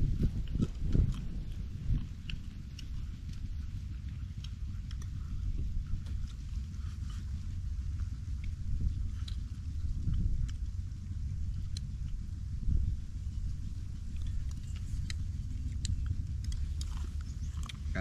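Two people eating grilled fish with chopsticks: scattered faint clicks and chewing over a steady low rumble.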